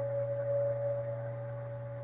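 A steady low hum with a fainter, higher steady tone above it, held unchanged without any rise or fall.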